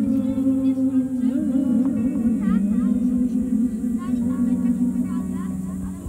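Live ambient improvised music: a held, wavering low tone with many quick chirping glides sounding above it.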